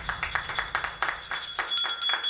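A brass hand bell ringing with a steady, high-pitched ring while a few people clap along.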